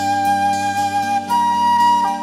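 Silver concert flute playing a slow melody: one long held note, then a step up to a higher held note a little past halfway. Underneath is a steady, sustained low backing chord.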